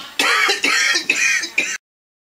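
A person's voice making four short, harsh throat-clearing noises in quick succession, then the sound cuts off suddenly.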